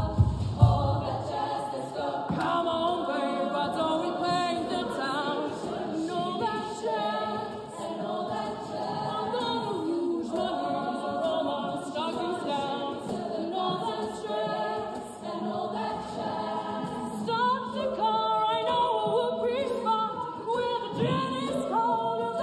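Women's a cappella choir singing in multi-part harmony with no instruments. A few low, evenly spaced beats are heard in the first second before the sustained singing carries on.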